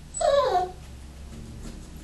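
A Parson Russell terrier puppy gives one short whine of about half a second, falling in pitch.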